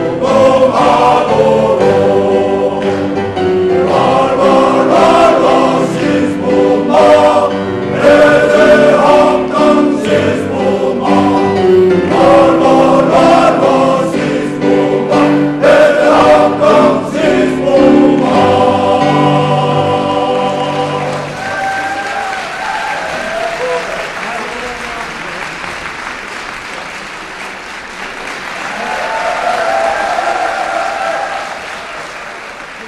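Men's choir singing the school song with piano accompaniment, the final chord fading about 21 seconds in, followed by steady audience applause.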